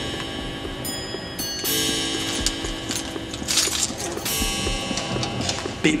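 Background music with sustained notes held steady, and a few scattered clicks.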